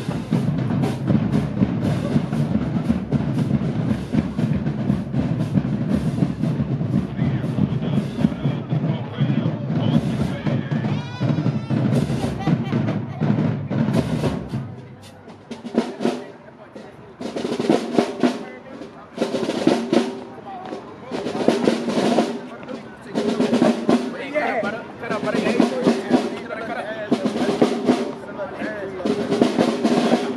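Marching band drumline playing a marching cadence, with snare drum rolls over steady bass drum hits. About halfway through the level dips, and the drumming goes on in short, repeated phrases.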